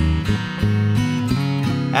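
Acoustic guitar strumming chords, a 1959 Harmony H-162, over an Ibanez TMB100 electric bass, with a chord change about half a second in. Singing comes back in right at the end.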